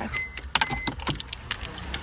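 A person climbing out of a small car: a string of sharp clicks and knocks from the door and from handling the phone, with one short high electronic beep near the start and a low steady rumble underneath.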